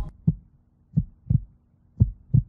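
Heartbeat sound effect: low double thumps recurring about once a second, played as a suspense cue during a countdown.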